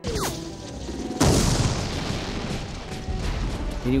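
Combat sounds: a brief falling whistle, then a loud explosion about a second in, followed by a dense rumble and crackle of rifle fire.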